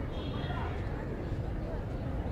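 Faint, indistinct voices of people talking in the background over a steady low rumble of outdoor ambience.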